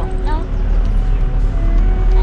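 Steady low rumble of a moving car heard from inside the cabin, under background music of sustained notes. A brief voice sounds at the very start.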